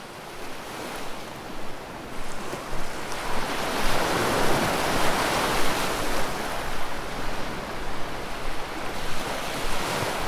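A rushing wash of noise like surf on a shore. It swells to its loudest about four to six seconds in, then eases off a little.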